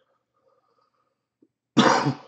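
One sudden, loud expulsion of breath from a person near the end, of the cough or sneeze kind, dying away quickly after a nearly quiet stretch.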